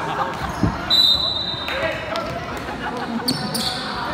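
Indoor basketball game sounds: sneakers squeaking on the hardwood court, a ball bouncing, and the voices of players and spectators echoing in the gym. A short high steady tone sounds about a second in.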